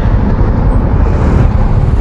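Motorcycle on the move: steady low rumble of its engine mixed with wind noise on the microphone.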